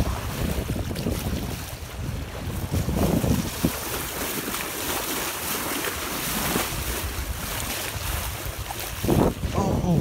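Wind buffeting the microphone, a steady low rumble, over water rushing past a moving boat's bow.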